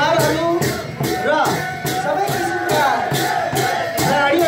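Sakela dance music: a dhol drum beating a steady rhythm of about two strokes a second under group singing, with the hubbub of a dancing crowd.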